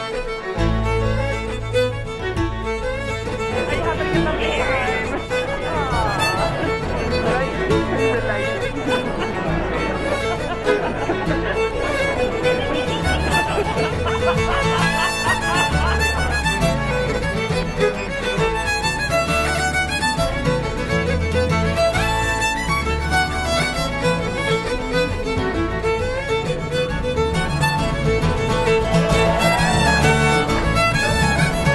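Folk band music led by a fiddle, over bass and drums; the low end comes in about half a second in.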